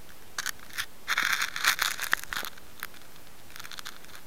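Handling noise: fingers rubbing and scraping on the recording device and its microphone as it is picked up and moved, a run of short crackly rustles, densest in the middle.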